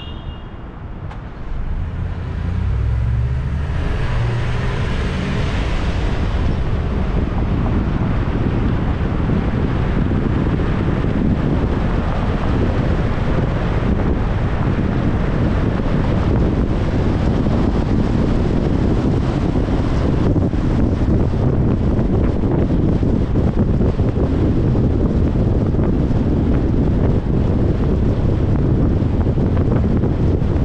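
A car pulling away from a standstill and driving on at road speed. A steady rush of road and tyre noise builds about two seconds in, with wind on the microphone.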